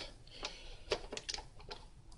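A few faint clicks and light taps as a half-inch MDF sample is seated in a fixture and clamped in place, about half a dozen irregular clicks spread over the two seconds.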